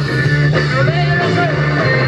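Live garage rock band playing loud, electric guitar over steady bass, heard from within the crowd.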